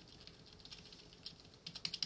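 Faint keyboard typing: quick, light key clicks in short runs, busiest about half a second in and again near the end.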